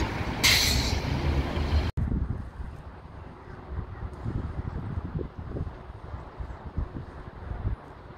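Street traffic, with idling vehicles' engine rumble and a short sharp hiss about half a second in. A cut near two seconds drops it to a quieter, uneven low rumble of distant traffic.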